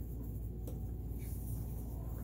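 Steady low background hum with one faint click a little under a second in.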